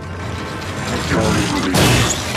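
Soundtrack of a sci-fi TV action scene: a dense, continuous rumble of effects, with a louder crash-like burst near the end, under music.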